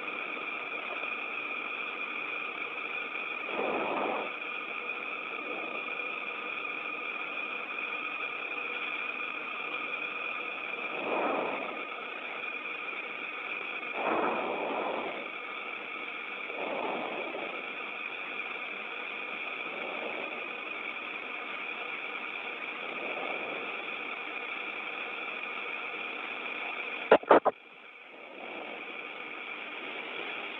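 Steady hiss of an open air-to-ground radio channel, with a few soft swells. Near the end two sharp clicks as the channel is keyed, and the hiss drops away briefly before returning.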